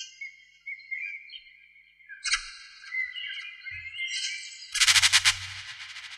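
Birds singing: a series of short, high, overlapping whistled calls. About five seconds in, a louder, brief burst of rapid rattling noise with a low rumble.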